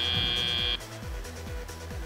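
Robotics field's end-of-match buzzer sounding a steady high tone that cuts off suddenly about three-quarters of a second in, marking the end of the match. Arena music with a steady electronic drum beat plays under it and carries on after.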